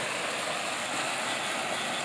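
Muddy floodwater rushing and churning as it spills over the top of a small culvert, a steady even rush of water.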